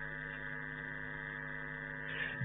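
Steady electrical hum and buzz, a stack of unchanging tones with no rise or fall, heard in a pause between sentences of speech.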